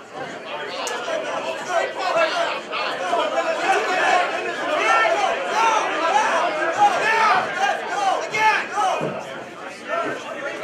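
Ringside crowd at a kickboxing bout, many voices talking and shouting over one another, with no single voice standing out.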